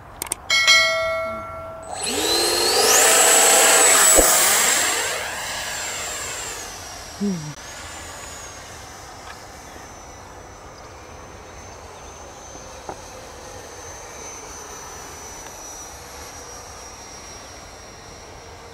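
64 mm electric ducted fan of an Arrows Hobby Marlin RC jet: after a short steady whine, the fan spools up with a rising whine to full throttle for the hand launch. The sound then fades as the jet flies away, its high tone drifting a little lower.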